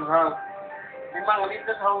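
A voice singing a repetitive sing-song tune in short rhythmic syllables, with a held note in the middle.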